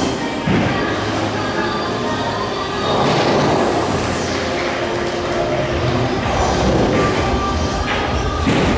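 Steady, loud room noise of a pool hall with no single clear source.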